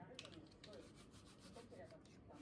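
Faint rubbing of a dish towel drying dishes, with light clicks, over a near-quiet kitchen.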